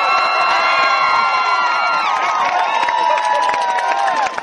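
Stadium crowd cheering a touchdown, with many long, overlapping held yells and shouts that ease off a little about halfway through.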